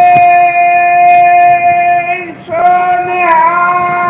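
Shabad kirtan: a high male voice holds one long sung note over harmonium and breaks off about two seconds in. A new note follows and steps up in pitch about a second later.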